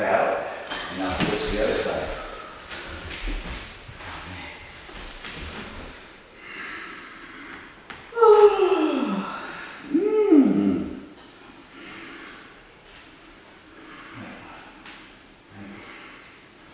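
Two long voiced groans, each falling steeply in pitch, a couple of seconds apart about halfway through: a person straining in a deep yoga twist stretch.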